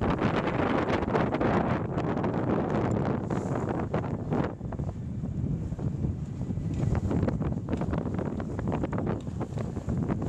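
Wind buffeting the microphone aboard a small sailboat under way on choppy water, a rough, gusting rush that never settles.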